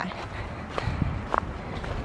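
Footsteps on a leaf-litter dirt trail, a few soft steps over a low rumble.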